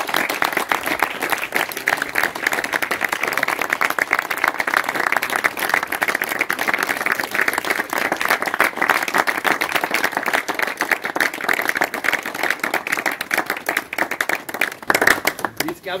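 A crowd applauding: steady clapping from many hands that dies away near the end.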